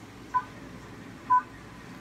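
Short electronic beeps, twice, about a second apart, each a brief two-note pip.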